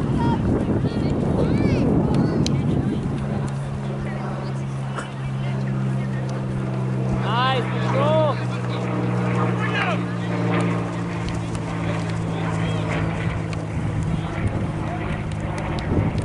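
A steady low motor hum sets in about three seconds in and runs until near the end. Over it come short, distant shouts of voices from around the field, with wind rumbling on the microphone at the start.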